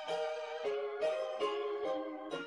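Electronic keyboard playing a melody over chords, a new note or chord struck about every half second.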